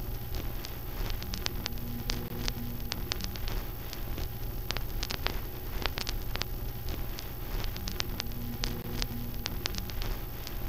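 Old-film surface noise: irregular crackle and pops over a steady low hum, with faint held tones now and then.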